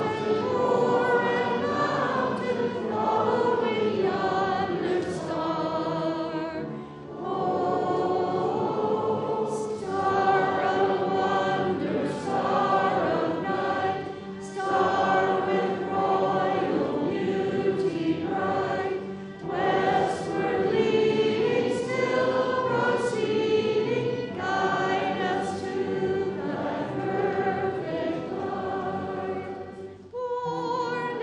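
Congregation singing a hymn together, with brief breaks between lines about seven seconds in and again near twenty seconds.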